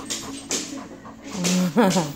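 A Labrador breathing and sniffing right at the phone in several short, noisy puffs, followed by a woman's laugh near the end.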